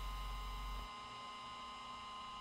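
Faint steady electrical hum and hiss with a few thin steady tones; the low hum drops out a little under a second in.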